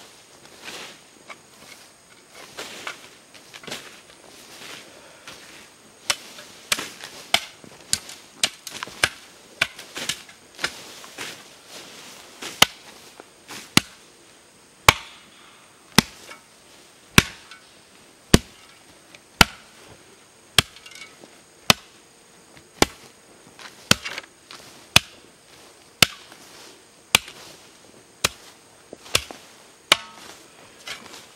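Steel shovel striking the earth of a grave mound, packing the soil down with repeated sharp slaps. The strikes come irregularly at first, then settle to a steady beat of about one a second from about twelve seconds in.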